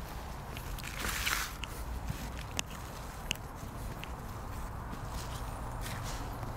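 Gloved hands digging and sifting through a loose mound of potting mix (peat moss, perlite and manure), with a soft scraping rush about a second in and a few light clicks scattered through.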